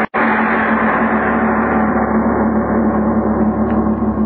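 A loud, sustained gong-like dramatic sting from a 1940s radio drama. It sounds as one rich, steady, ringing tone with a strong low note, breaks off for an instant just after it begins, holds for about four seconds, then fades near the end.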